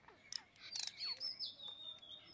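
Small birds chirping and calling: a quick rattling burst of notes just under a second in, among whistled notes that slide in pitch, and a high note that dips and then holds steady through the second half.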